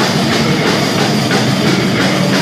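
Death metal band playing live and loud: distorted bass and guitar over a drum kit, one dense, unbroken wall of sound.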